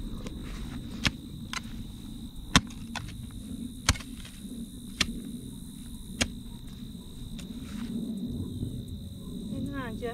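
A metal garden hoe chopping into dry soil to dig up peanuts: about five sharp strikes roughly a second apart, then quieter scraping through the dirt.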